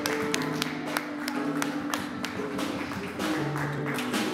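Live band music from drum kit, guitar and bass: held chords over a repeating bass note, with sharp percussive hits.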